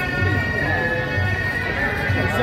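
Traditional Taiwanese procession music: a suona (Chinese shawm) holding a sustained, nasal melody over low drum beats.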